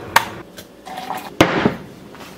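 Two sharp knocks about a second and a quarter apart, the second louder with a brief ring after it.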